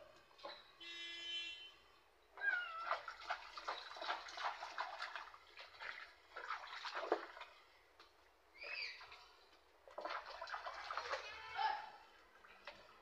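A kitten meowing several times as it is bathed, with water splashing in a plastic tub as hands wash it.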